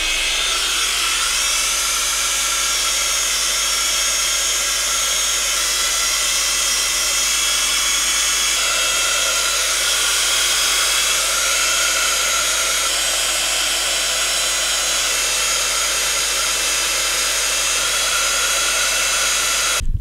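Handheld electric heat gun running steadily, its fan blowing with a steady whine as it shrinks packaging-tape covering tight over a balsa model wing. It cuts off suddenly near the end.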